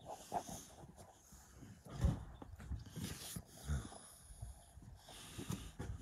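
Logs in plastic sacks being shifted in a car: crinkling plastic, a few soft knocks, and short breathy exhalations from the effort of lifting.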